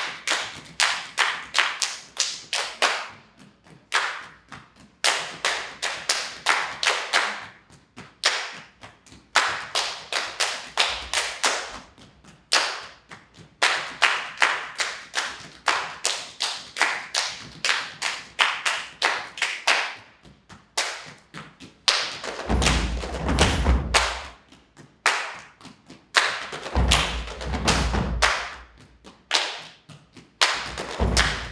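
Body percussion by a group of performers: rhythmic hand claps and slaps on the chest and body played together, in phrases with short breaks between them. Near the end, two stretches of deep thumps join the claps.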